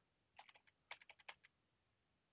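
Faint typing on a computer keyboard: two quick runs of keystrokes, a short number being entered.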